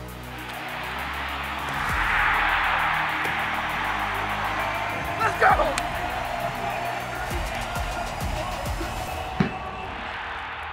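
Background music with a beat, laid over a stadium crowd cheering that swells over the first two seconds and slowly dies down. A short shout is heard about five and a half seconds in.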